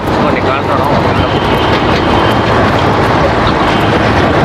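Steady outdoor street noise: a dense hum of traffic with faint background voices.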